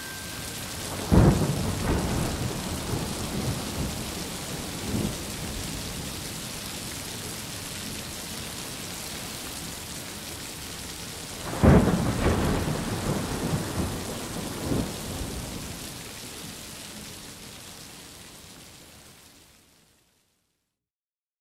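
Steady rain with thunder: a loud thunderclap about a second in and another near the middle, each rolling away, with fainter rumbles between. The storm fades out over the last few seconds.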